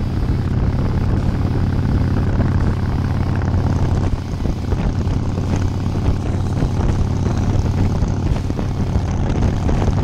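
Motorcycle engine running steadily at cruising speed while riding, with wind noise on the microphone.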